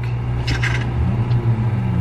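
A steady low hum, with a short soft noise about half a second in.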